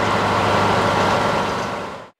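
Narrowboat's diesel engine running steadily with a low hum, fading out near the end.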